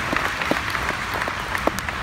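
Audience applauding: a steady patter of many hands clapping, with no speech over it.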